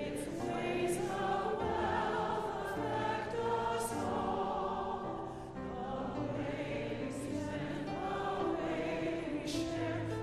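Congregation singing a hymn together in unison, with instrumental accompaniment underneath. There is a short break for breath between phrases about five and a half seconds in.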